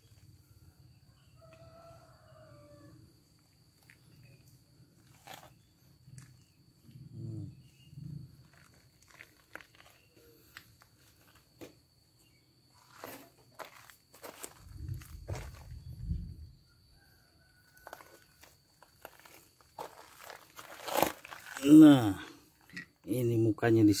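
Footsteps and scattered clicks and rustles of a handheld phone camera being carried through a garden, with a brief low rumble about two-thirds of the way in. A man's voice comes in loudly near the end.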